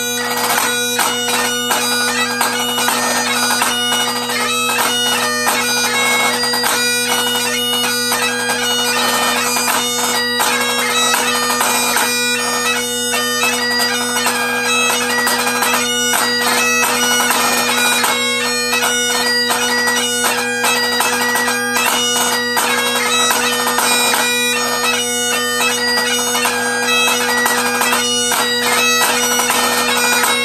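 A pipe-band snare drum played with fast rudimental strokes and rolls, accompanied by a Great Highland bagpipe playing a tune over its steady drones. The bagpipe is the louder of the two, and the drum strokes cut through it as sharp cracks.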